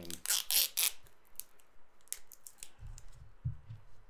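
Hands tying off the neck of an inflated latex balloon: a quick cluster of rubbing and stretching noises in the first second, then a few faint clicks.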